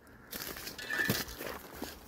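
Footsteps crunching through dry fallen leaves and twigs, with brush rustling against the walker, starting about a third of a second in.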